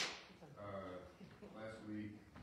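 A single sharp thump from a handheld microphone being handled as it is lowered, followed by faint, indistinct voices in the room.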